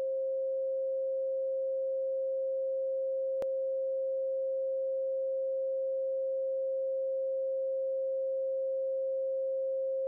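Steady pure 528 Hz sine tone, the carrier of a 4 Hz delta binaural beat, holding at one pitch and level.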